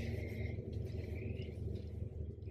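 A steady low background hum with a faint hiss above it, no distinct events.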